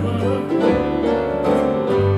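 Acoustic bluegrass-gospel string band playing a short instrumental passage between sung lines: mandolin picking over long, held bass notes.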